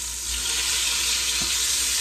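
Beef short ribs sizzling as they sear in hot tallow in an Instant Pot's stainless inner pot. The sizzle grows louder shortly after the start as a rib is turned over with metal tongs.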